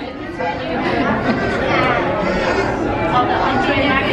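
Steady background chatter of many overlapping voices, diners talking in a busy restaurant dining room.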